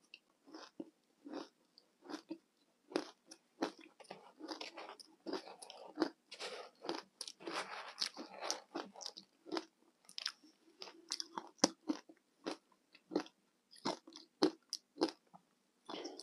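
Ice chunks coated in matcha and milk powder being bitten and chewed: a run of sharp, irregular crunches, packed most closely in the middle.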